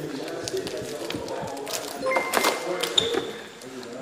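Electronic diamond tester beeping: one steady tone comes on about halfway through and holds, and a second, higher tone joins about three seconds in, with light clicks of handling and background chatter.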